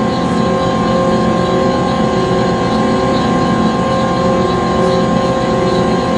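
Conveyor belt machinery running: a steady mechanical hum with a constant whine over it.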